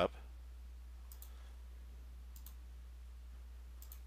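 A steady low hum with three faint, short clicks, spaced about a second apart.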